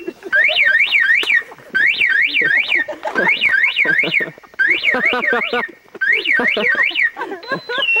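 An electronic car alarm siren sounding loudly: rising-and-falling whoops in groups of three or four, about three a second, then a high steady tone that steps down to a lower one near the end.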